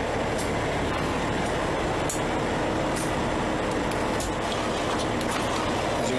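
Electric motor of a power slide-out storage tray in a motorhome's basement compartment running steadily as the tray extends, with a few faint ticks.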